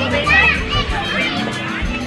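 Children's voices, with a high child's call or squeal about a quarter to half a second in, over chatter and background music with low bass notes.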